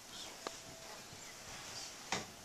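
Quiet room tone with faint voices, broken by one light click about half a second in.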